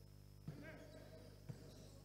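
Two faint thuds of a basketball bouncing on a sports-hall court floor, about a second apart, over a quiet hall background.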